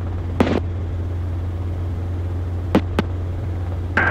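Steady low drone of a Robinson R22 helicopter's engine and rotors in flight. A few short clicks come through, one about half a second in and two close together near the three-second mark.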